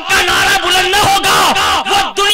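A man preaching in a loud, shouted voice through a microphone and loudspeakers, his pitch sweeping up and down in an impassioned declamation.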